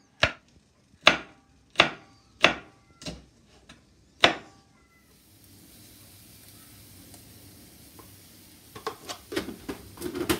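Knife chopping green chillies on a plastic cutting board: about seven sharp, separate chops over the first four and a half seconds. After that comes a faint steady hiss, with a few light clicks near the end.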